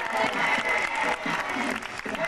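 Audience applauding: many hands clapping steadily, with crowd voices mixed in.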